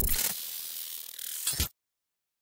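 Mechanical clicking sound effect, like a ratchet or gears turning, laid over an animated caption card. It opens with a few sharp clicks, runs on as a rushing noise, and ends with a last click before cutting off suddenly near the end.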